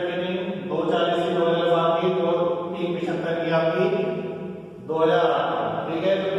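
Chanting voices in long, held phrases over a steady low drone, with a short break about three-quarters of the way through.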